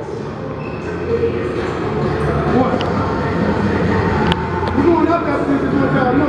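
Gym ambience: indistinct voices over a steady low rumble, with one sharp click about four seconds in.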